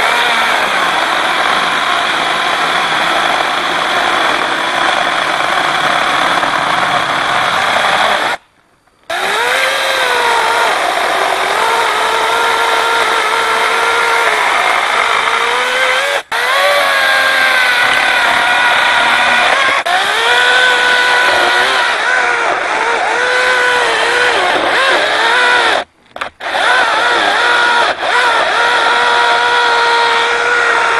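Lynxx 40-volt brushless battery chainsaw running flat out and cutting through a felled trunk. Its whine dips in pitch and recovers again and again as the chain loads up in the wood, and it breaks off briefly twice. The saw is not very powerful but cuts well when kept at high revs.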